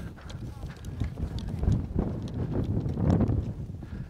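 Wind buffeting the camera microphone: an uneven, gusty rumble that swells through the middle and eases near the end, with faint scattered clicks and taps over it.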